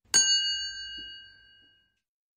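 A single bright chime, like a small bell, struck once and ringing out with a high, clear tone that fades away over about a second and a half.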